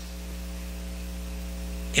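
Steady electrical mains hum from the microphone and sound system, a low drone made of several even, unchanging tones.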